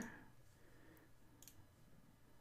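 Near silence: room tone, with a faint single computer mouse click about one and a half seconds in.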